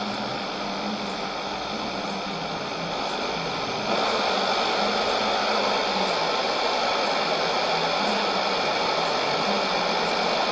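Shortwave static and hiss from a Sony ICF-2001D receiver tuned to an AM signal on 15190 kHz after the station's sign-off, with a faint low hum underneath. The hiss gets a little louder about four seconds in.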